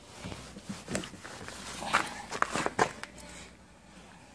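Camera handling noise: irregular rustles and soft knocks as the handheld camera is moved about, dying down after about three and a half seconds.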